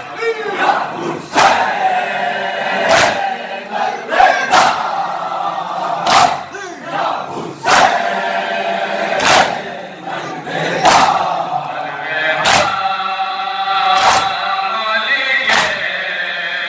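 A crowd of men chanting a nauha (Muharram lament) together, with a sharp unison slap of hands on chests (matam) about every second and a half keeping the beat.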